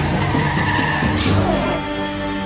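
Vehicle tyres skidding on the road as it comes down hard, with a sharp rush of noise just over a second in, over dramatic music.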